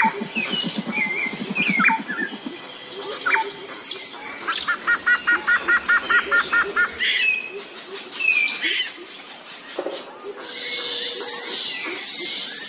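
Forest birdsong, with many birds chirping and calling over one another. Around the middle, one bird gives a quick run of about a dozen evenly repeated whistled notes.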